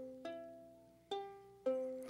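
Ukulele strummed on its open strings a few times, each strum ringing out and fading, as it is checked after retuning a flat string.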